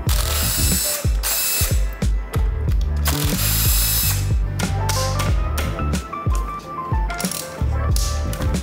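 Short bursts of a cordless power tool running a socket on engine bolts, each lasting about a second, four times, with background music playing under them.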